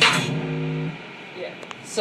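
An electronic hip-hop beat played from Ableton Live over the room speakers cuts off just after the start, leaving one held low note that stops about a second in. Then there is low room sound and a single click near the end.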